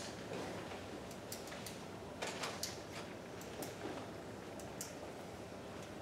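Scattered light clicks and taps from a VR headset being handled and fitted, over a steady room hum.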